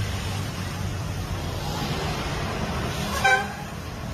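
A short vehicle horn beep a little over three seconds in, over a steady low rumble of street traffic.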